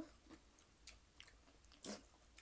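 Faint chewing and mouth sounds of a person eating crisp fried fish, with a few soft clicks and one sharper crunch near the end.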